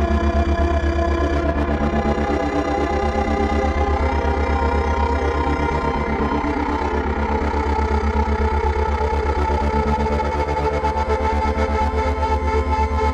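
Live experimental electronic music: layered sustained drones and tones over a rapid, steady pulse in the bass, holding throughout.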